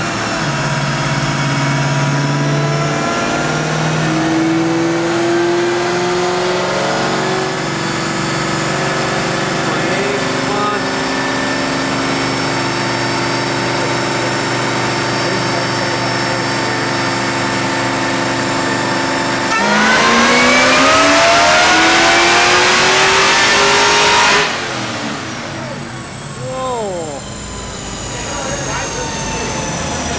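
Ford Mustang Cobra V8 on a chassis dyno, climbing in steps through the gears at part throttle. About twenty seconds in it goes to wide-open throttle: a louder engine note rising steeply for about five seconds, then cut off suddenly as the throttle closes, the pitch falling as the engine and rollers wind down.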